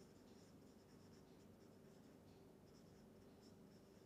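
Faint scratching of a felt-tip marker writing on paper, in short strokes.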